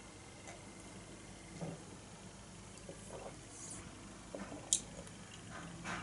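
Faint sounds of a person sipping and tasting beer from a glass: small soft mouth and liquid sounds, with one brief sharp click a little before five seconds in.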